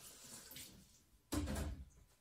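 Kitchen tap running into a sink during dishwashing, then a louder thump about a second and a half in.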